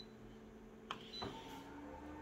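Office multifunction copier: a short beep at a touchscreen press, then about a second in a click and a second beep as the job is started, and the machine's motor starts up with a low, slightly rising hum as it begins scanning the original for a two-colour copy.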